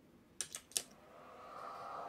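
A few quick clicks of battery-charger alligator clamps being clipped onto the terminals of a LiFePO4 battery. Then, about a second in, a faint whirring hum from the charger swells up as it is connected.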